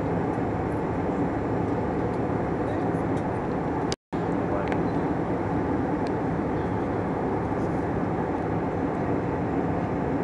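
Aircraft cabin noise in flight: a steady, even rushing drone of engines and airflow, heard from a seat by the window. The sound cuts out for a split second about four seconds in.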